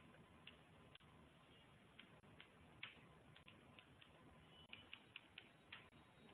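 Faint, irregular clicks of computer keyboard keys, struck one at a time, with a quick run of several clicks near the end, over low hiss. The keys are pressed while spacing lines of code into aligned columns in a text editor.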